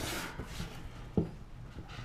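Cardboard lid of a round hat box lifted off with a brief rustling scrape, then a soft thump about a second in and a few light taps of the box being handled.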